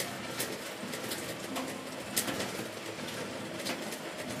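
A steady hiss with a few sharp clicks, and a bird calling faintly.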